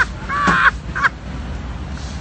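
A short, high-pitched human cry of about half a second, an onlooker's shriek of laughter, with a couple of brief sharp sounds around it.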